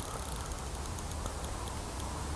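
Outdoor ambience with a steady, uneven low rumble of wind on the microphone and faint, scattered high ticks.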